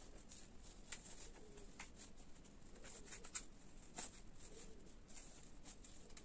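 Scissors cutting through folded colour paper: faint, irregular snips with light paper rustling as the sheet is turned.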